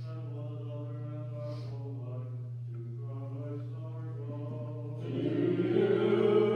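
A single voice chanting a Byzantine liturgical melody in held, stepping notes, over a steady low hum. About five seconds in, louder singing by several voices comes in.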